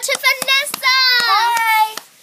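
A young girl's high voice singing a few short wordless notes, then holding one long high note for about a second near the end, with a few knocks from the phone being handled.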